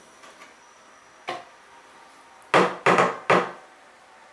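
A stirring stick rapped against the rim of a bucket of glaze slip: one light knock, then three sharp knocks in quick succession.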